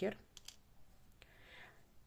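A few faint, sharp clicks of a plastic locking stitch marker being unclipped from plush-yarn crochet work, with a brief soft rustle about halfway through.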